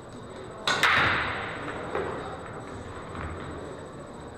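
Pool shot: the cue tip strikes the cue ball with a sharp crack about two-thirds of a second in, followed by a quick second click and a ringing tail. About two seconds in comes another, lighter click of a ball striking a ball or a cushion.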